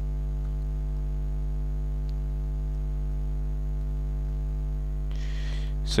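Steady electrical mains hum with a stack of evenly spaced overtones, running at an even level. A short breathy noise comes near the end, just before speech.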